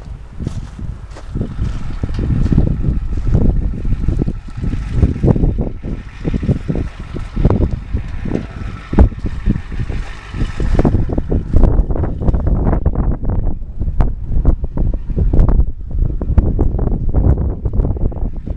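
Wind buffeting the microphone: a loud, uneven low rumble that swells and drops, broken by many short irregular knocks.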